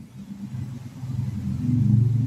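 A low, steady rumble with a faint hum in it, growing louder over the second half.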